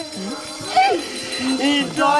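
A performer's voice in two short, swooping theatrical exclamations, during a break in the singing and music, which resume at the end.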